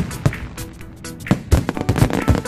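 Aerial firework shells bursting: a bang at the start and another a quarter second in, then a quick run of several bangs in the second half, with music playing throughout.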